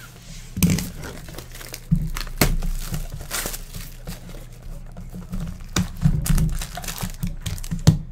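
Plastic shrink-wrap crinkling and tearing as it is stripped from a sealed cardboard trading-card box, with sharp knocks of the boxes being handled and set down.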